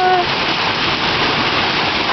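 Heavy hailstorm: hail and rain falling hard, a dense, steady rush of countless impacts.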